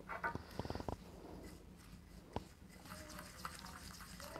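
Wooden spoon stirring a gritty sugar, coffee and olive-oil scrub in a small glass bowl, faint, with a quick run of light clicks against the glass within the first second and a single click a little past the middle.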